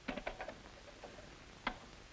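Combination dial of a wall safe clicking as it is turned: a quick run of clicks in the first half second, a few faint ticks, then one sharper click near the end.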